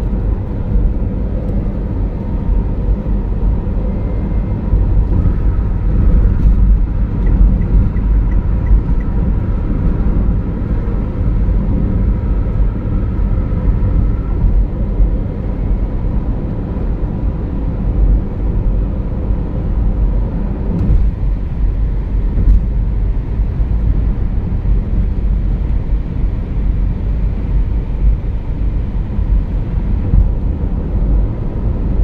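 Steady low road and engine rumble of a car cruising at highway speed, heard from inside the cabin.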